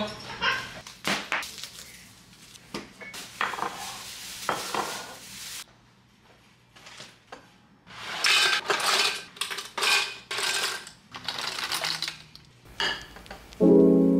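Kitchenware and glassware being handled and set down, giving a run of clinks, knocks and short clattering rattles with a brief quiet pause midway. Piano music comes in near the end.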